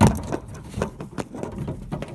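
Handling clicks and knocks: a sharp click at the start, then a scatter of lighter clicks and taps.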